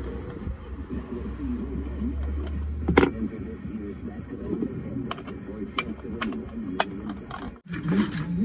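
Sharp metal clicks from a chainsaw's bar and chain being handled for adjustment: one loud click about three seconds in, then a series of lighter, separate clicks. A low steady hum underneath stops at the loud click.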